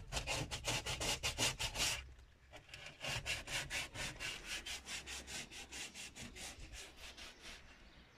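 Hand sanding: rapid back-and-forth rubbing strokes, about six a second. A run of about two seconds, a short pause, then a longer run that fades out near the end.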